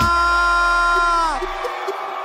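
A man's voice through the club PA holding a long drawn-out shout of the act's name, dropping in pitch as it ends a little over a second in, over a deep bass rumble. Crowd cheering fills in after it.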